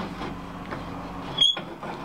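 Old swivelling handsaw vise being turned over to a new angle with a saw clamped in it: low handling noise, then a brief high-pitched metallic squeak about one and a half seconds in.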